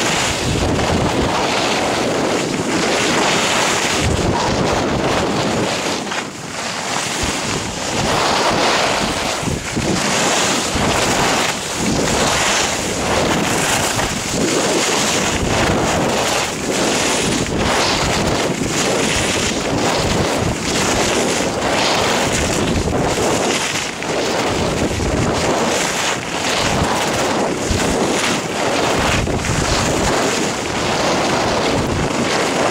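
Wind rushing over the microphone of a camera carried by a skier at speed, surging unevenly, mixed with the scrape of skis carving on groomed snow.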